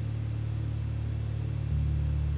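Soft ambient background music: sustained low synth-pad tones, with the chord shifting near the end.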